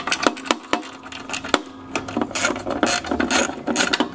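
Ratchet socket wrench clicking in short irregular runs as it undoes the screws holding a lawnmower's recoil starter housing.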